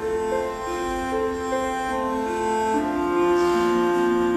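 Slow orchestral music of long held, overlapping notes, led by strings, with no singing.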